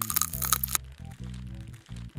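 Background music with sustained low bass notes, with a sharp crackling sound effect over it for the first second or so, laid on as the scalpel scrapes ticks away.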